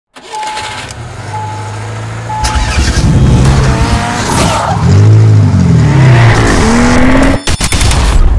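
Produced intro sound effect: three short beeps about a second apart, then a race car engine revving, its pitch sweeping up and down, with tyre squeal, and a few sharp clicks near the end.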